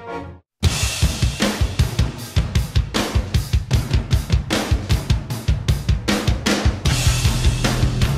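A rock drum kit plays a quick, steady beat of bass drum, snare and cymbals. It starts abruptly after a brief silence. Near the end a low bass line joins in.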